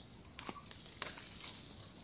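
Steady high-pitched chirring of insects in the vegetation, with two faint sharp snaps about half a second and a second in as cassava leaf stalks are broken off by hand.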